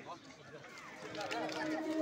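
Faint, scattered voices of footballers and onlookers on an outdoor pitch. A steady low tone comes in during the second half as music begins to fade in.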